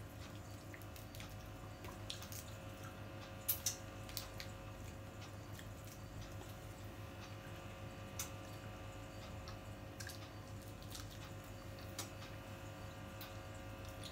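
Sparse soft clicks and wet squishes of shellfish being picked apart and eaten by hand, the loudest click about three and a half seconds in. A steady low hum runs underneath.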